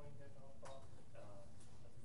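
Faint, distant speech with a couple of sharp clicks, one about two-thirds of a second in and one near a second and a half.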